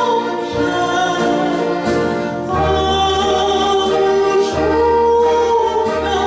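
A woman singing a Christmas carol in a classical style, holding long notes, with accompaniment. Low bass notes come in about halfway through.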